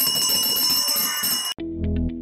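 A bell rings steadily for about a second and a half, then cuts off abruptly and background music with a steady beat begins.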